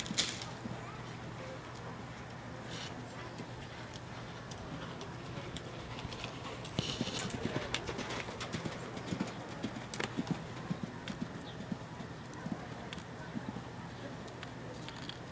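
Hoofbeats of a horse cantering on a sand arena. They grow louder and denser about halfway through as the horse passes close by, then fade again.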